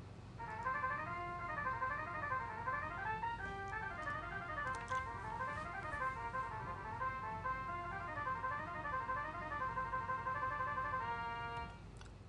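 Finale notation-software playback of a brass transcription: synthesized first trumpet and lead baritone, doubled an octave apart, playing fast stepwise sixteenth-note runs that go up and down, starting about half a second in and ending on held notes near the end.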